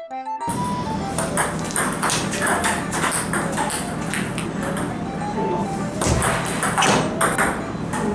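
Table tennis rally: the celluloid/plastic ball clicking off the paddles and bouncing on the table, about two sharp hits a second, with background music running underneath.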